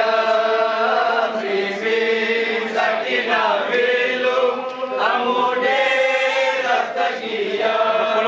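A group of men chanting a noha, the Shia mourning lament of a matam gathering, in unison, in long held phrases that glide in pitch.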